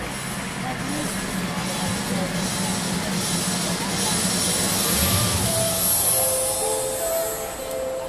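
Gymnastics arena hubbub: spectators' chatter, with floor-exercise music over the hall's loudspeakers coming in about halfway through as a series of held notes.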